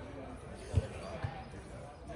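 Two dull thumps about half a second apart, the first louder, over faint distant voices.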